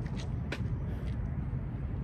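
Outdoor city background noise: a steady low rumble of distant traffic, with a faint click about half a second in.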